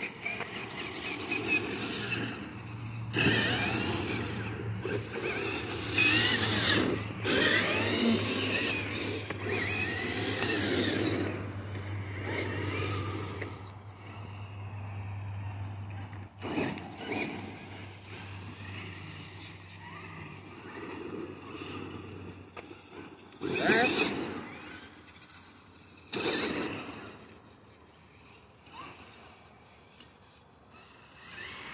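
Electric RC rock crawler's motor and geared drivetrain whining, its pitch rising and falling with the throttle, loudest in the first third. There are a few short louder bursts of noise along the way.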